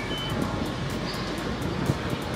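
Steady low rumble of outdoor background noise, like distant traffic, with a soft low thump near the end.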